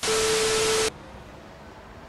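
TV-static transition sound effect: a loud burst of white-noise hiss with one steady tone running through it, lasting just under a second and cutting off suddenly. Faint background noise follows.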